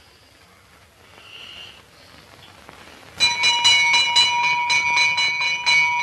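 An electric doorbell ringing continuously, starting about three seconds in after a few seconds of faint soundtrack hiss.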